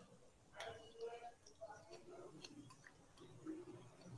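Near silence: faint room tone with a few soft clicks and a faint, low voice in the background.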